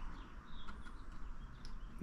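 Quiet background hiss with a few faint, short, high chirps from birds scattered through it.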